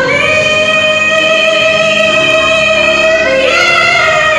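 A woman singing solo into a handheld microphone, holding one long high note for about three seconds and moving to a new note near the end.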